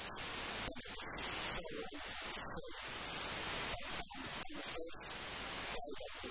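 Heavy static hiss across the recording, broken by brief dropouts, with a woman's amplified speech faintly underneath.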